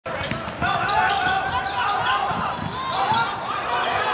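A basketball being dribbled on a hardwood court, a run of repeated bounces, under the mixed shouting and chatter of an arena crowd.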